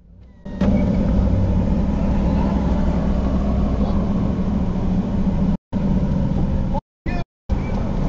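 Steady low rumble and hum of a car heard from inside the cabin while it idles and creeps in traffic. The sound drops out completely three times, briefly, in the second half.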